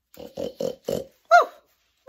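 A woman imitating a pig: a quick run of short, noisy oinks, then one high squeal that falls in pitch and is the loudest sound.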